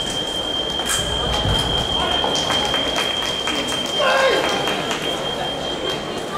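Fencing hall ambience during several sabre bouts at once: many sharp clicks and knocks over a general din, a voice crying out about four seconds in, and a thin steady high-pitched tone throughout.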